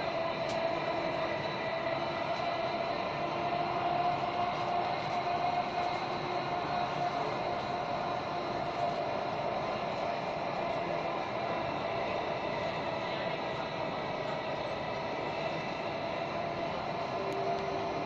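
Delhi Metro Magenta Line train running at speed, heard from inside the carriage: a steady running noise with a steady whine, unchanging throughout.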